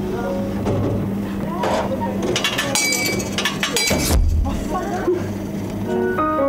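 Vending machine dispensing: a steady motor hum with clicking and rattling as the spiral turns, then a low thud about four seconds in as the item drops into the tray.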